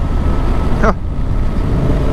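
Yamaha Ténéré 700's parallel-twin engine running steadily while riding a gravel road, with a constant low rumble of engine and wind noise. There is a brief voice sound just before a second in.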